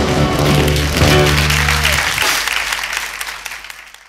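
A band's final held chord ends about two seconds in under audience applause, and the clapping then fades away.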